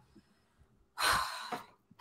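A woman sighing: one breathy exhale about a second in, fading away over about half a second.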